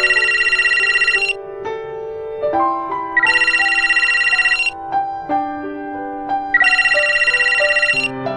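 A phone ringing three times, each ring a rapid trill about a second and a half long, over soft, slow piano music.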